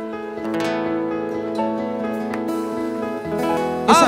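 Acoustic guitar playing the slow intro of a samba song, single plucked notes and chords left ringing, with a low bass line coming in near the end.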